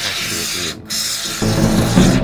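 Aerosol can of expanding gap-filling foam hissing as foam is sprayed, in two stretches with a brief break. Loud guitar music comes in about two-thirds of the way through.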